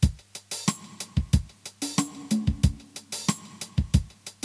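Yamaha PSR-E253 keyboard's built-in 16-beat drum rhythm pattern starting suddenly and running at tempo 92: a steady drum-machine groove of kick, snare and hi-hat hits.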